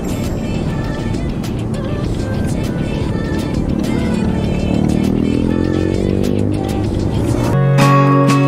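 Many motorcycle engines running as a large group ride passes, with one engine rising in pitch as it accelerates in the second half. Music plays under it, and a strummed guitar track cuts in abruptly near the end.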